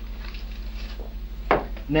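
A pause in a man's talk: a steady low hum with faint rustling and handling noise, then a sharp knock about one and a half seconds in, just before his voice comes back.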